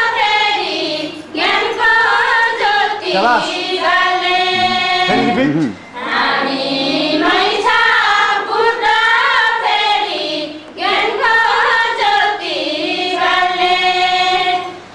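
A group of women singing a song together in unison, in long sustained phrases broken by short pauses.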